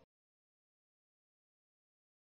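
Silence: the sound track is blank, with no room tone at all.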